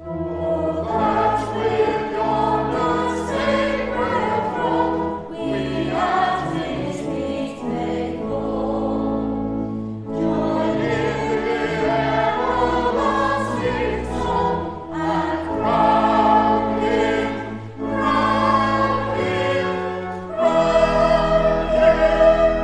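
Church choir singing with organ accompaniment, the voices and organ starting together right at the start after a short pause, then going on in phrases with brief breaths between lines.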